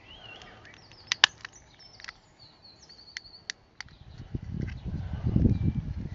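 Short sharp plastic clicks as a small knife pries at the clip tabs of a DJI Spark drone battery's case, the loudest a little over a second in, with faint bird chirps in the background. A low rumbling noise builds from about four seconds in.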